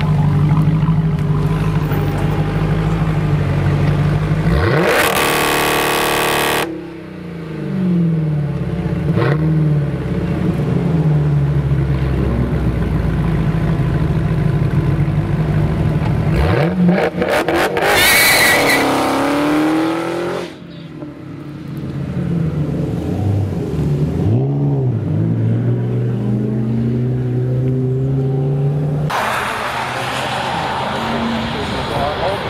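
Dodge Challenger SRT Hellcat's supercharged 6.2-litre V8 idling at the exhaust, then revved hard twice, about five seconds in and again about seventeen seconds in, with throttle blips in between. After the second rev it settles back to a steady idle.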